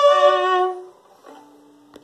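Solo violin playing the closing notes of a chacarera, two notes bowed together and held, stopping a little under a second in. A much fainter low note follows, ended by a short click.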